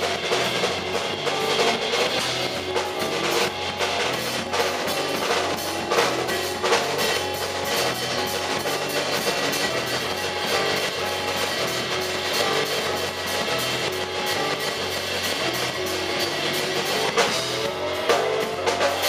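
A live trio of keyboard, drum kit and upright double bass playing, the drums keeping a steady beat under moving bass notes and keyboard.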